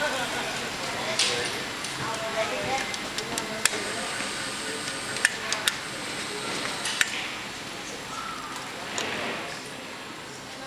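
Indistinct voices of people talking in a large hall, with a few sharp clicks scattered through the middle.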